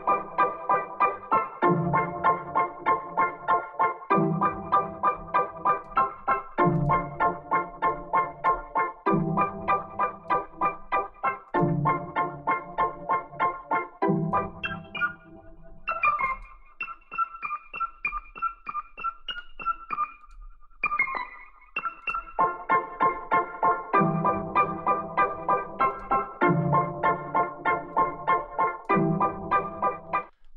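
Sampled keyboard part from the Kontakt 'Stacks' library's 'Off The Roads' preset playing a chord progression in quick repeated pulses, about four a second, with the chord changing every couple of seconds. About halfway through it thins to a sparse, higher line for several seconds, then the full pulsing chords come back.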